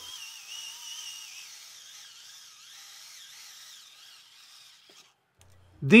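Small cordless electric screwdriver whining as it drives a screw into wood, its pitch wavering with the load, fading away about five seconds in.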